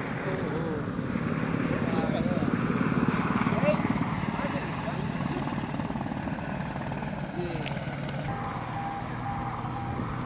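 Helicopter flying over, its rotor beating steadily. It grows louder to a peak a few seconds in, then eases off. People's voices are talking in the background.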